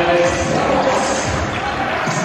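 Basketball arena sound: a ball bouncing on the hardwood court under a steady murmur of crowd noise in the hall.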